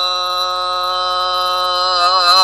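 A man's chanting voice holding one long, steady note with rich overtones, drawing out the end of a line in the sung recitation of the Sikh Hukamnama.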